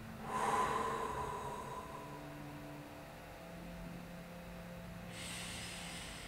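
A man breathing slowly and deeply through an in-through-the-nose, out-through-the-mouth breathing exercise. One loud breath comes about half a second in and trails off over a second or so. A second, hissier breath begins about five seconds in.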